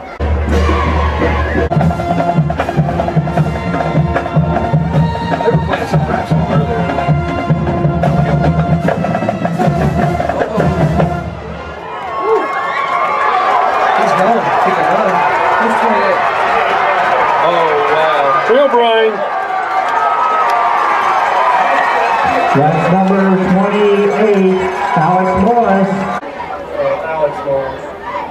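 A band plays with drums over crowd noise for about the first twelve seconds; the music then stops, leaving a stadium crowd talking and cheering.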